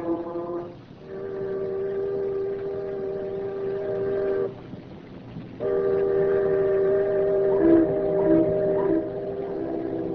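Ship whistles blowing long, steady blasts, a radio-drama sound effect on a low-fidelity 1938 broadcast recording. A short blast ends just under a second in. A long one lasts about three and a half seconds. After a pause of about a second, another long blast sounds with two pitches together.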